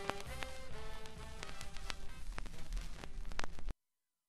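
Swing-style band with brass playing the instrumental close of a French chanson from a 45 rpm single, stopping abruptly near the end.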